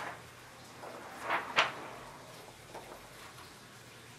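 Brief handling noises of the thin plastic and metal parts of a dismantled LCD monitor's backlight: a light click at the start, then two short swishes about one and a half seconds in, the second the loudest.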